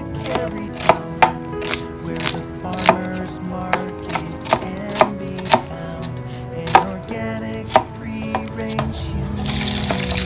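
Kitchen knife slicing an onion on a bamboo cutting board: sharp, uneven strikes about two a second. Near the end, a sizzle as the sliced onion goes into hot oil in a wok.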